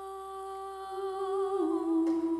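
Women's a cappella voices holding one long, steady hummed note. About a second and a half in, the note steps down and the voices grow louder.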